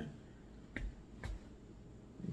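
Two sharp clicks about half a second apart, low in level.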